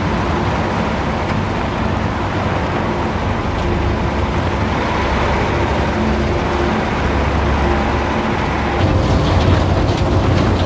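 Heavy trucks and a car driving past, their engines running in a steady dense din with faint held tones. A louder low rumble comes in near the end.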